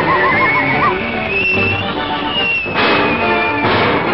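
Cartoon orchestral score with a high wavering tone that quavers quickly near the start, then glides up and slowly falls. Two short crashes come near the end.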